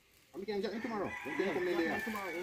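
A rooster crowing, one long call starting about a second in, with people talking over it.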